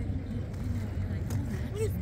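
Outdoor background: a steady low rumble, like traffic or wind, under faint voices of other people talking.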